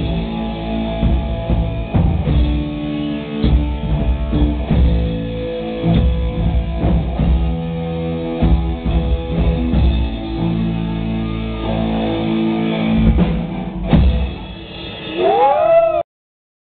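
A live rock band playing: a Tama drum kit, electric guitar and bass guitar. The music dips briefly near the end, then comes back with rising pitched glides.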